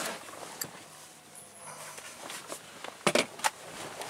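Soft rustling and handling noise as a person settles into a vehicle's front seat, with a quick run of sharp clicks about three seconds in.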